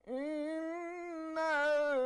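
Melodic Quran recitation (tajwid): a single reciter's voice begins a long held note. About a second and a half in it moves into a louder phrase with a wavering, ornamented pitch.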